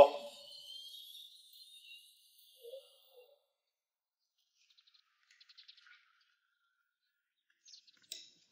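Quiet outdoor ambience with faint, high bird chirps, and a few light clicks near the end.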